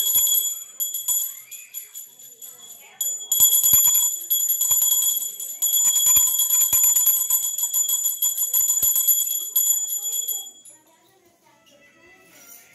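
Small brass puja hand bell rung by shaking, its clapper striking many times a second under a high, steady ringing tone. It rings briefly at first, eases off, then rings hard for about seven seconds and stops shortly before the end.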